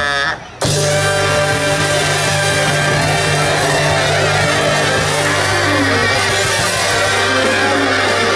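Live ska band playing: a large horn section of saxophones, trumpets and trombones over electric guitar and rhythm section. Shortly after the start the whole band stops together for a brief break, then comes straight back in at full volume.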